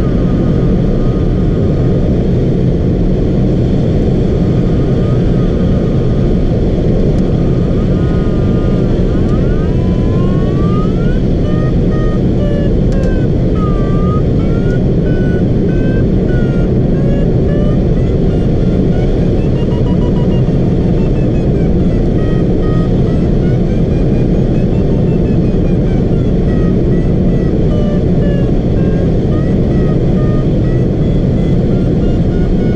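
Steady loud rush of airflow and buffeting inside a Ka6-CR glider's cockpit. Over it an electronic variometer tone slides up and down in pitch, turning into rapid beeping after the first third as the glider climbs in a thermal.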